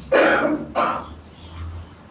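A man clearing his throat twice into a close microphone: a longer rasp, then a shorter one.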